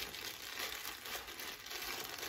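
Plastic poly mailer bag crinkling and crackling as hands pull and tug at it, trying to tear it open.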